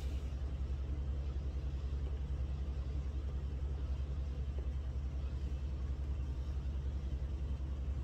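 A steady low hum with a slight rapid pulsing, unchanged throughout.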